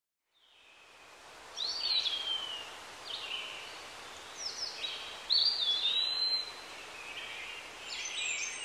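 Birds calling: short gliding chirps every second or so over a steady outdoor hiss, fading in from silence over the first second and a half.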